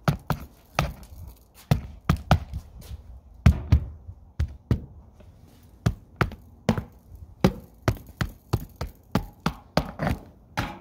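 A hand tool tapping and poking at wooden house siding and trim, irregular sharp knocks two or three times a second. This is an inspector sounding the wood for fungus and termite damage.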